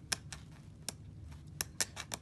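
A sharp tool scraping around the rim of a plastic air-mattress valve, giving a handful of sharp, irregular clicks as it shaves the edge down so the cap fits less tightly.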